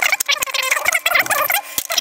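Sped-up, high-pitched chattering of a man's voice talking through the repair, with a few sharp clicks.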